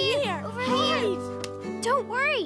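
Cartoon characters' voices over background music: a few short, high-pitched vocal exclamations, with held music chords underneath.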